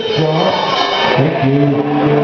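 Live surf rock band playing: electric guitars and drums, with sustained held notes.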